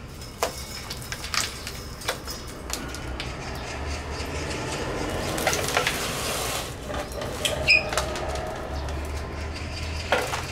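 A dry twig pigeon nest being pulled loose and handled by gloved hands: rustling and crackling of twigs with scattered sharp snaps, busiest in the middle, and one short high squeak near the end. A steady low hum runs underneath.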